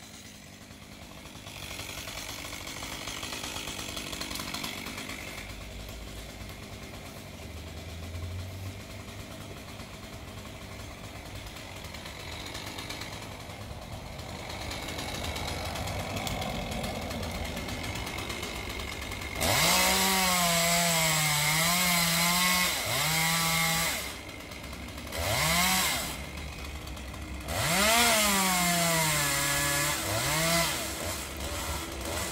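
Chainsaw cutting a tree trunk: after a quieter stretch it revs up about twenty seconds in and runs at full throttle in several bursts, its pitch wavering and dipping as the chain bites into the wood.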